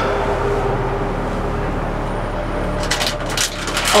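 Steady low background hum and hiss, then a short burst of sharp crackles about three seconds in: the crunch of someone eating crisps.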